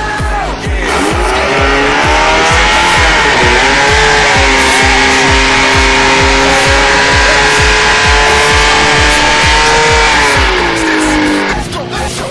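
An engine revs up, holds at high revs for several seconds and then winds down, over background music with a steady beat.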